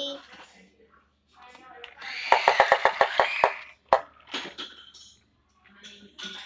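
A child's voice making a loud, rattling car-engine noise for a toy car, lasting about a second and a half, followed by a single sharp click.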